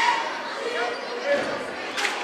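Gymnasium crowd murmur and scattered distant voices echoing in a large hall during a stoppage in play, with a basketball bouncing on the hardwood floor.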